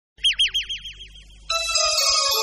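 An electronic chirp effect: a high falling tone repeated about seven times a second, dying away like an echo. Synthesizer music starts about one and a half seconds in.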